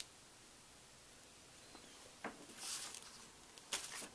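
Quiet handling sounds as a plastic piping bag of icing is put down on a stone counter. After a near-silent start there is a light tap, a brief rustle, and a couple of small clicks near the end.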